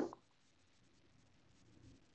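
Near silence: faint room tone after a sentence ends.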